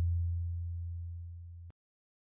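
Tail of a deep bass boom sound effect on the closing title card: a steady low tone fading slowly, then cut off suddenly near the end.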